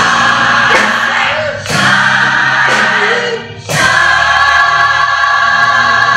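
Gospel-style song performed live by a band with massed voices singing sustained chords, in phrases broken by two short breaks, the last chord held from a little past halfway.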